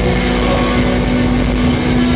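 Live rock band playing loudly, with distorted electric guitars holding a sustained chord that drones steadily over a dense wash of noise.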